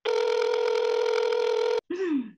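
A steady electronic call tone: one held note with overtones that cuts off sharply after a little under two seconds, as a call is placed and connects.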